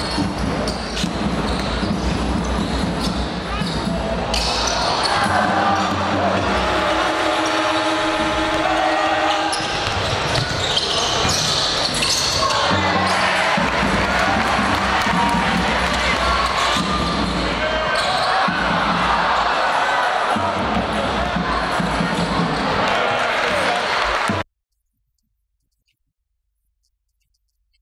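Sound of an indoor basketball game: the ball dribbling on the wooden court amid voices in the hall. It cuts off suddenly near the end.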